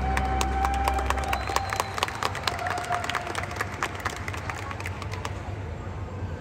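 Audience applauding and cheering in a large arena, scattered sharp claps thinning out toward the end, while the band's last low sustained chord fades away in the first second or so.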